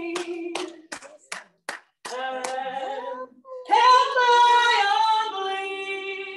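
A woman singing a gospel song with handclaps keeping time, about two to three claps a second through the first two seconds. She then sings on with long held notes.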